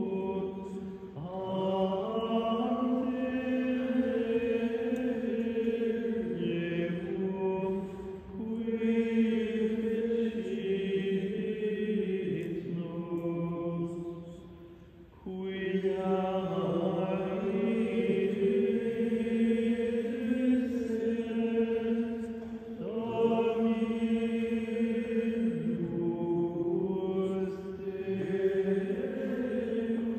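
Monks' choir of men's voices chanting a slow liturgical chant in long, held phrases, with short breath pauses between them.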